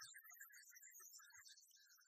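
Near silence, with faint hissy whispering.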